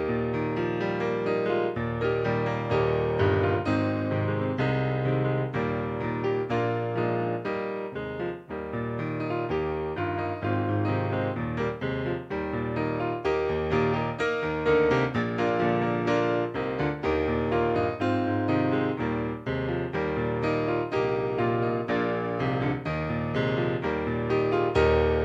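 Piano music, a steady stream of notes and chords with no voices.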